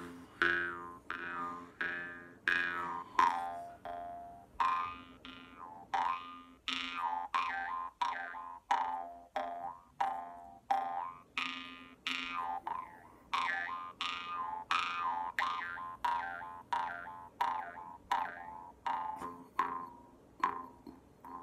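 Metal jaw harp plucked in a steady rhythm, about two twangs a second, each dying away quickly. A constant drone sits under them, while the overtone melody shifts from pluck to pluck.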